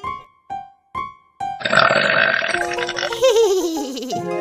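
A few short plucked notes of cartoon music, then a long, loud comic burp about a second and a half in, trailing off in a wobbly falling tone.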